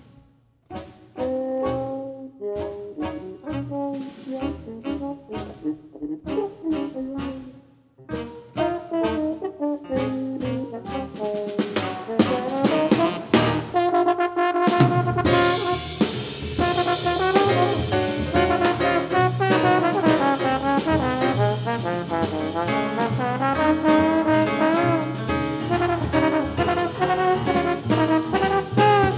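Live jazz band with trumpet and trombone: the horns play short, spaced phrases with pauses between them, growing denser, and about fifteen seconds in the band fills out into a fuller, louder ensemble sound.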